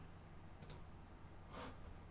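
Two faint computer mouse clicks about a second apart, over near silence.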